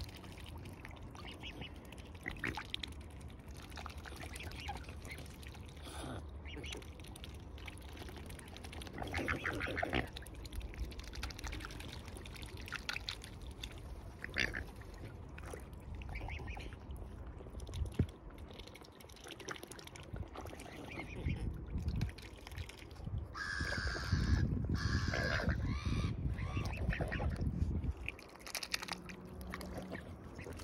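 Mute swan cygnets dabbling for seeds in shallow water: repeated short wet clicks and slurps of their bills in the water, growing louder and busier for a few seconds about three-quarters of the way through.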